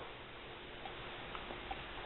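Faint hiss with a few light clicks about a second in, as an aluminium moped crankcase half and its crankshaft are handled.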